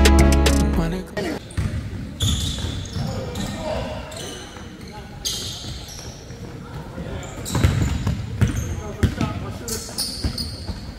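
Music with a heavy bass beat cuts off about a second in, giving way to a live basketball game on a gym's hardwood floor: the ball dribbling, sneakers squeaking in short high squeals, and players' voices.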